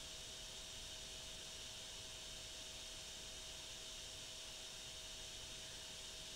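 Steady low-level hiss with a thin, unchanging whine through it: the background noise of the recording, with no other sound.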